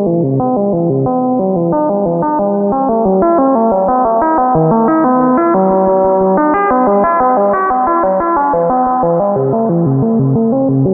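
Critter & Guitari Pocket Piano MIDI synthesizer running its arpeggiator: a quick, unbroken run of short stepped synth notes climbing and falling in pitch, drenched in reverb.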